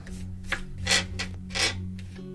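Three short rubbing, scraping sounds of small objects being handled, the loudest about a second in, over soft, steady background music.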